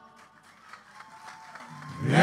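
A murga choir's held chord fades away into a brief, faint lull in the singing, with faint crowd noise; near the end a low sung note comes in just before the full chorus returns.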